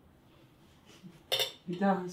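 Metal cutlery clattering briefly against a plate about a second in, after a near-silent pause, with a voice breaking in just after it.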